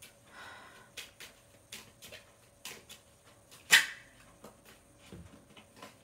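Playing cards being handled on a table: a scatter of soft clicks and brief slides, with one much louder sharp snap a little past the middle.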